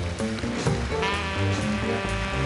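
Live swing jazz from a small band: a walking bass line and drum kit with cymbal strokes, and a saxophone coming in with a bright, held note about a second in.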